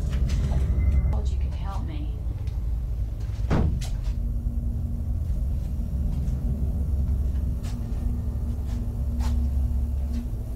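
A low rumbling drone with a steady hum that settles in about four seconds in. Scattered faint clicks run through it, and a short whooshing sweep comes at about three and a half seconds.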